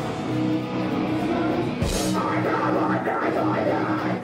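Heavy metal band playing: distorted electric guitars holding chords over drums. The deepest bass drops out for the second half.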